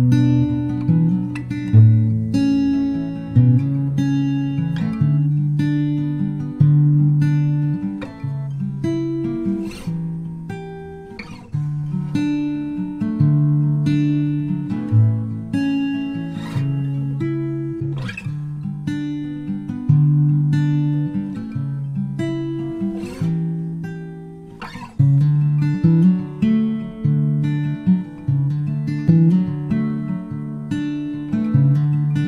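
Calm acoustic guitar folk instrumental: plucked notes, each with a sharp start and a ringing decay, over held lower notes.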